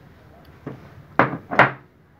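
Steel transmission clutch plates being set into a clutch drum: a light click, then two sharp metal-on-metal clacks close together.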